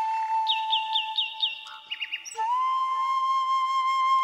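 Background film score led by a flute-like instrument holding long, sustained notes. A quick run of about five high chirps sounds about half a second in. The music dips briefly near the middle, then the held note comes back slightly higher.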